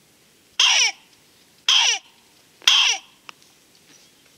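HB Calls reference 92 fox mouth call blown three times, about a second apart. Each is a short, loud, high yelp that falls sharply in pitch, imitating a fox calling in the mating season.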